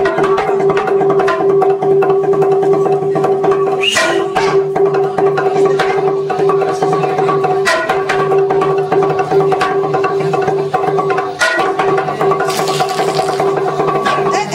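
Txalaparta played by two players: wooden planks on trestles struck with upright wooden sticks in a fast, continuous rhythm, the planks ringing at a few fixed pitches. The run of strokes breaks briefly three times, about four, eight and eleven and a half seconds in.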